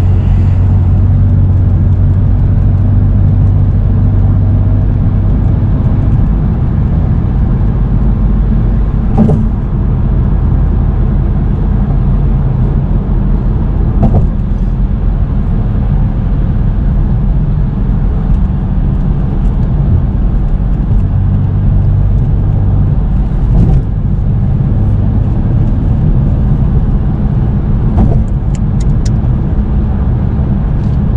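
BMW M4 Competition's twin-turbo inline-six cruising steadily on a highway, heard from inside the cabin as a low engine drone over tyre and road noise. A few brief knocks come through along the way.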